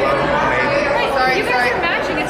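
Several people talking at once: busy, overlapping chatter of voices with no single clear speaker.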